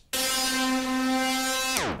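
Teenage Engineering OP-1 playing back a recorded synth note from its tape: one steady, sustained tone rich in overtones that dives sharply down in pitch near the end as the tape playback is slowed to a stop.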